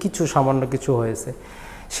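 A man's speaking voice, lecturing, broken by a short pause and a quick intake of breath near the end.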